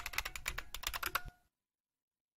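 Computer keyboard keystrokes typing a password, ending on the Enter key, in a quick run of clicks that stops abruptly a little over a second in.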